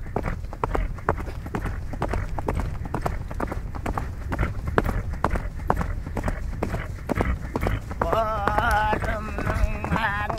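Horse's hooves clopping in a steady rhythm under a rider. About eight seconds in, a Tuvan xöömei throat-singing voice comes in, its pitch wavering.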